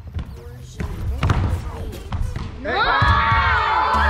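Basketballs bouncing on a hardwood gym floor, a few separate knocks. About three seconds in, a group of children suddenly break into loud shouting and cheering.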